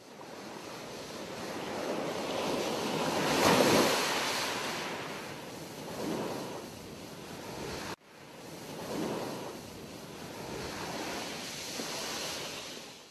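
Ocean surf: waves breaking and washing back, swelling and fading several times, with the biggest swell about three and a half seconds in. The sound cuts off abruptly about eight seconds in and starts again.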